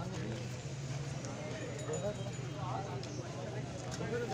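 Bull's hooves stepping on hard ground as it is led on a rope, under men's voices talking in the background and a steady low hum.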